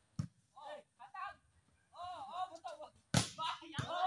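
Volleyball struck by players' hands twice: a short sharp slap just after the start and a louder one about three seconds in.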